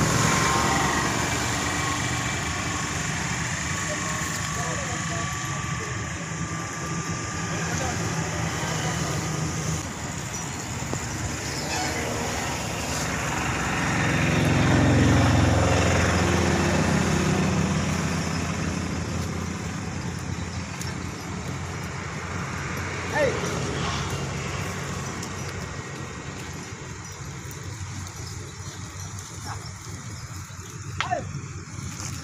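Outdoor background noise with a steady low rumble and faint, indistinct voices; the rumble swells and fades about halfway through.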